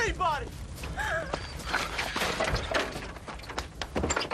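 A young woman crying out and sobbing in pain, her voice wavering up and down for about the first second, followed by scuffling noises with scattered clicks and knocks.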